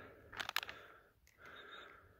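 Faint handling noises: a couple of sharp clicks about half a second in, then soft rustling, as hands and a hand-held camera work over sliced beef jerky on a bun.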